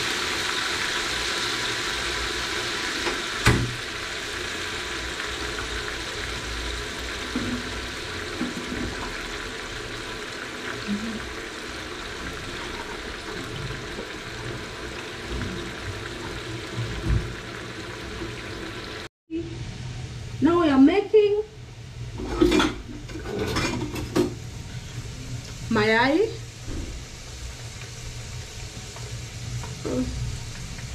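Potato chips frying in hot oil in a pan: a steady sizzle, with one sharp click a few seconds in. The sizzle cuts off abruptly about two-thirds of the way through, after which there are a few short voice-like sounds that rise and fall in pitch.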